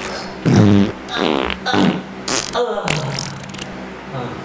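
A string of comic fart noises: about five short bursts in quick succession, varying in pitch, with one short hissing burst near the middle.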